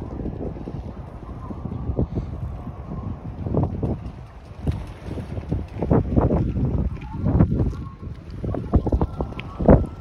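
Wind buffeting the microphone: an uneven low rumble that swells and drops in gusts, coming more often in the second half.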